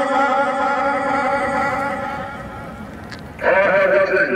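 A held, voice-like pitched tone that slowly fades over about three seconds, then a second held tone starting abruptly near the end.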